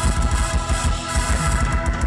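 Live band playing an instrumental passage, with a fast, steady drum beat under bass and keyboard.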